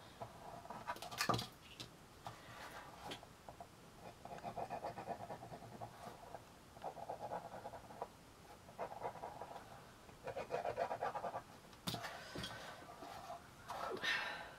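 Ballpoint pen scratching back and forth on a small cardboard box in a series of short bursts, each about a second long, with a sharp tap about a second in.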